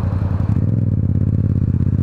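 Yamaha MT-07's parallel-twin engine, fitted with an Akrapovic exhaust, running steadily at low road speed as heard from the rider's onboard camera. Its note changes slightly about half a second in.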